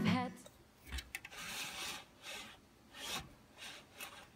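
A sliding window's mesh insect screen being pushed open along its track, in a series of short scraping rubs.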